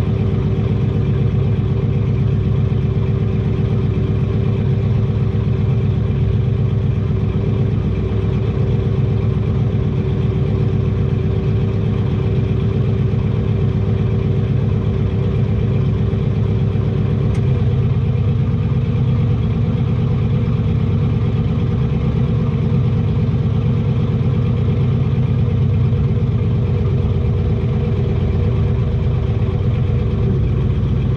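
Twin-turbo big-block Chevy C10 engine idling steadily, heard from inside the stripped-out cab. About halfway through, one steady tone in the idle drops away, but the engine runs on unchanged.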